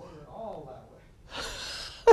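A man's faint, low voiced sound, then a breathy gasp starting about a second and a half in, just before he laughs.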